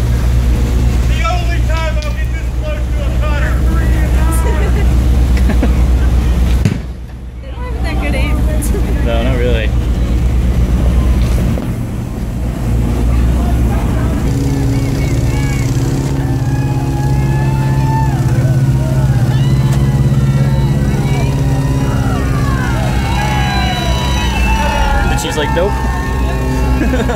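A boat's engine running steadily under distant shouting and voices from people on the water. About halfway through, the engine note steps up and grows louder.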